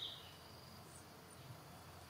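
Faint, steady insect chirring, with the tail of a louder high-pitched call dying away in the first moment.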